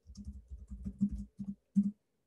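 Typing on a computer keyboard: a quick run of keystrokes that stops just before the end.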